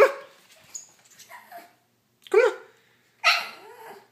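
A pug barking a few short, sharp barks, demanding food because it is hungry.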